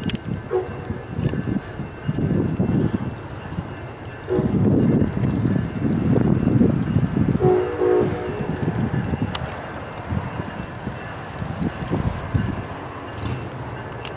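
Amtrak Pacific Surfliner passenger train approaching cab car first and sounding its horn: a brief blast about half a second in, then a longer blast of about a second midway. Under the horn runs the rumble of the oncoming train, loudest from about four seconds in.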